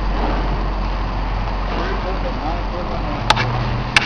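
Excavator's diesel engine running steadily in the background, with faint distant voices and two sharp clicks near the end.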